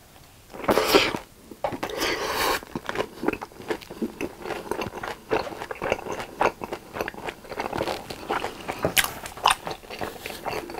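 Close-miked eating: a crunchy bite into a sugar-coated fried Korean hot dog about a second in, a second loud crunch shortly after, then steady wet chewing with many small crunches and mouth clicks.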